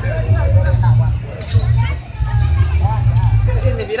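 Crowd chatter and scattered voices over a loud low rumble of motorcycle engines running close by in a crowded street.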